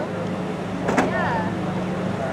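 Boat engine running steadily on the water, with a single sharp knock about a second in.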